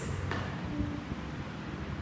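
A steady low background rumble of room noise, with a faint click about a third of a second in.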